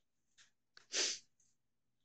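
A man's short, forceful burst of breath close to the microphone, about a second in, with a couple of faint breathy noises just before it.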